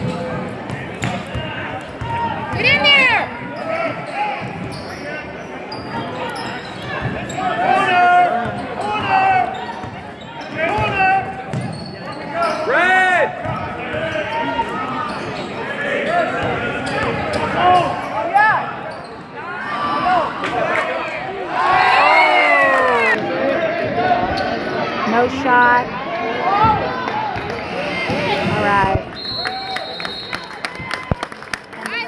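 Basketball play on a gym's hardwood court: the ball bouncing as it is dribbled, and many short high sneaker squeaks as players cut and stop, with spectators' chatter echoing in the hall.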